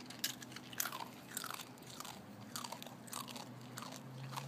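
A Jindo dog crunching and chewing crisp black bean and quinoa chips, in a series of irregular crunches.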